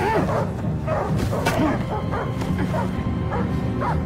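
A dog barks in short repeated barks and a man grunts as he is kicked, over a steady low music score.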